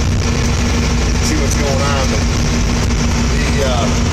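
Diesel engine of a bladed heavy-equipment machine running steadily as it drives, heard from inside its cab, a continuous low rumble with a steady hum.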